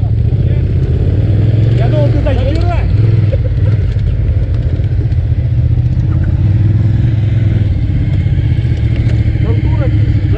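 Several motorcycle engines idling steadily, a continuous low drone, with faint voices about two to three seconds in.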